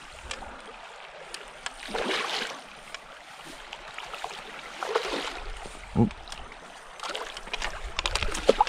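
Water splashing and sloshing as a hooked rainbow trout thrashes at the surface and is scooped into a landing net, with louder swells about two and five seconds in, over the steady flow of a creek.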